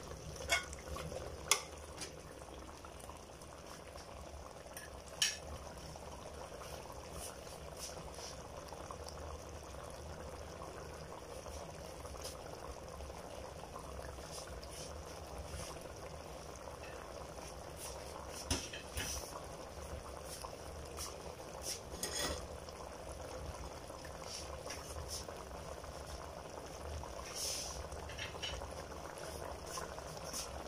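Chicken tinola broth boiling in an open aluminium pressure-cooker pot, a steady bubbling with a few light clicks scattered through it. The broth is cooking down to very little liquid.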